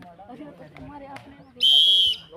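Scattered voices of players and onlookers, then one short, loud blast of a referee's whistle near the end, a steady shrill tone.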